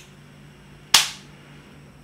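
Hard plastic phone case snapping into place on a folding phone: one sharp, loud click about a second in, with a faint tick at the start.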